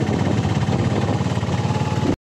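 Engine of a moving vehicle running steadily under way, heard from on board, with a fast, even pulse.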